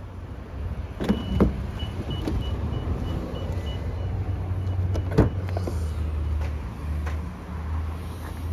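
Powered door on a Toyota Alphard minivan operating: a couple of latch clunks, then a rapid run of short high warning beeps while the door motor runs, and a loud clunk about five seconds in. A steady low hum runs underneath.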